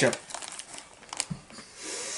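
A plastic Takis chip bag crinkling as a hand rummages inside it for chips, with a few sharp crackles.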